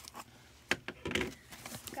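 Cardboard shipping box being opened by hand, flaps pulled apart: scattered light knocks and rubs, a sharp click a little after half a second, and a short scrape of cardboard just after a second in.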